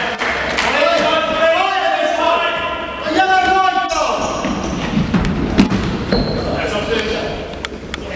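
Futsal players shouting to each other in an echoing sports hall, with the thud of the ball being kicked and bouncing on the wooden floor. The long calls fill the first half; knocks of the ball come through the second half.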